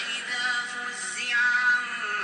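A male Quran reciter's voice drawing out long melodic notes in tajweed recitation, the pitch sliding down a little after a second before holding again.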